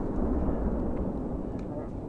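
Low rumble of an RPG-7 round's explosion at the launcher, slowly dying away.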